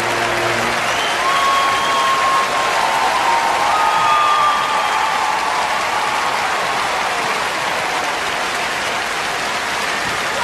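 A large concert audience applauding, with a few drawn-out cheers over it. The band's final held chord dies away in the first second.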